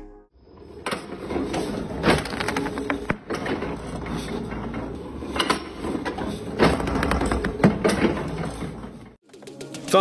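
Workshop sound at a paper-cutting guillotine used to trim stacks of notebooks: irregular sharp knocks and clatter over a busy background noise, starting about a second in and dropping away shortly before the end.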